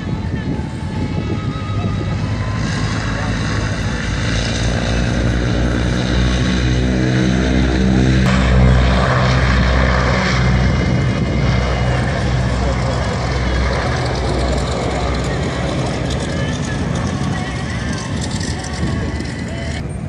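Propeller airplane engine passing on the runway, growing louder to a peak about eight to ten seconds in and then fading away. People are talking in the background.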